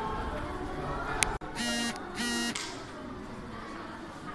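Two short buzzy electronic beeps, about half a second apart, just after a sharp click.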